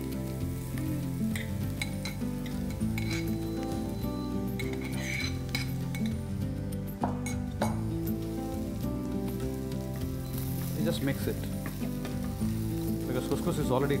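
Couscous and sautéed vegetables sizzling in a frying pan as they are stirred with a wooden spatula, with two sharp knocks of the spatula on the pan a little past the middle. Background music runs underneath throughout.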